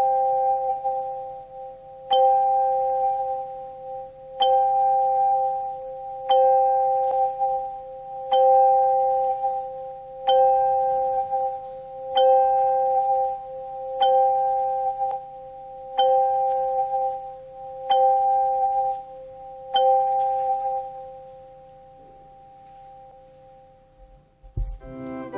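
A pair of handchimes, one in each gloved hand, struck together about every two seconds, eleven times in all. The two clear notes sound a fifth apart and ring on between strokes. After the last stroke, near the end, they fade away.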